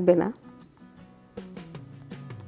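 A few light clicks of a metal spatula against a frying pan as potato chunks are stirred, over a faint steady high-pitched whine. Soft background music comes in about halfway through.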